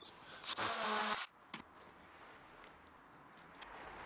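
Power drill briefly whirring, under a second long, about half a second in, as a hole is started through a batten held against a brick wall.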